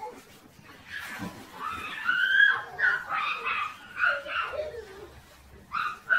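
Two dogs play-fighting, giving a run of high, bending whines and yelps from about a second in until about five seconds, then another short yelp near the end.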